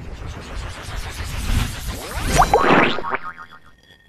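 Animated logo sound effects: a noisy swell with several quick rising pitch glides that peak about two and a half seconds in, then die away, leaving faint high ringing tones.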